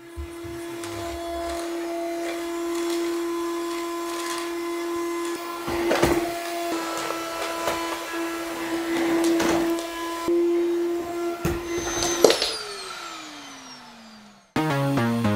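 Corded canister vacuum cleaner running with a steady high motor whine, with a few knocks as the nozzle is pushed over the rug. Near the end there is a loud click, and the motor's pitch falls away as it winds down.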